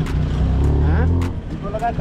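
Auto-rickshaw engine running as it drives, heard from inside the open cab. A low engine hum swells for the first second or so as a van passes close alongside, then drops away.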